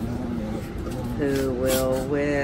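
Two dogs play-fighting on a floor, with light scuffling, and a drawn-out pitched vocal sound starting a little past halfway through.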